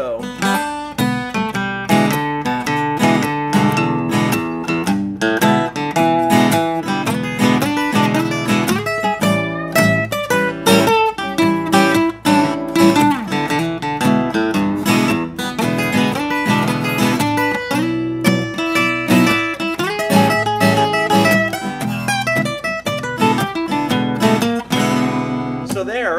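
Two acoustic guitars playing a 12-bar blues in E: one keeps the chords going while the other solos with double stops, two notes picked at once, strung up and down the neck across the change from E7 to A7.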